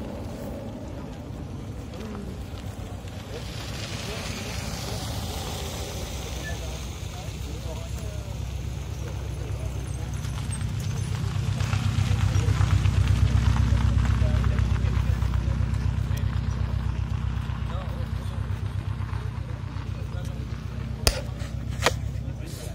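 Subaru Impreza WRX's turbocharged flat-four engine running close by, a low pulsing rumble that builds to its loudest about halfway through and then fades, as if the car is moving slowly past. People are talking in the background, and there are two sharp clicks near the end.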